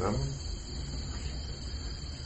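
Steady background chorus of crickets, with a low steady hum beneath it.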